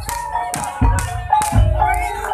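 Javanese gamelan music accompanying an ebeg horse-trance dance: deep drum strokes about twice a second under sustained ringing metallophone tones.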